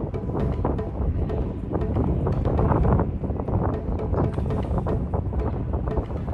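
Background music, with wind rumbling on the microphone.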